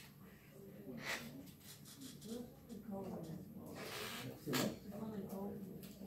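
Quiet, indistinct talking voices, too low for the words to be made out, with a short hiss about four seconds in.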